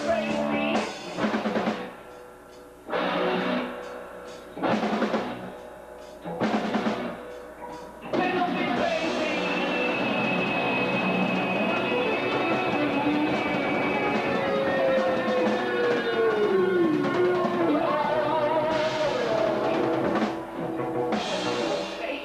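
Rock band playing live: electric guitar, bass guitar and drum kit. Four short full-band hits about two seconds apart, then continuous playing from about eight seconds in, with long held and bending notes.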